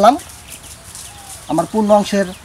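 Faint bird calls in the background, short high chirps, during a pause in a man's speech; his voice returns about one and a half seconds in.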